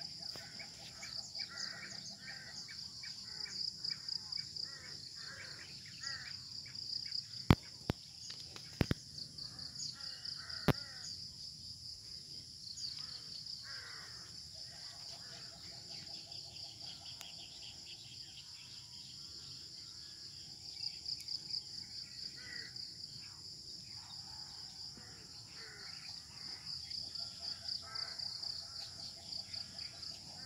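Rural field ambience: a steady high-pitched chorus of insects, with runs of repeated bird calls over it and three sharp clicks a little before the middle.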